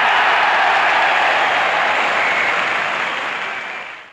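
Loud crowd applause, steady and even, fading out near the end.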